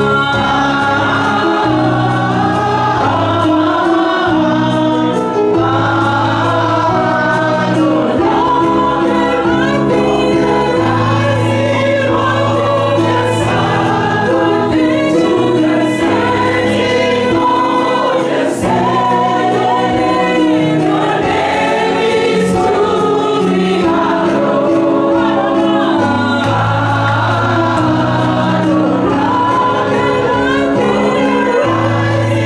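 Women singing a gospel worship song into microphones, with their voices amplified over held low backing chords that change every few seconds.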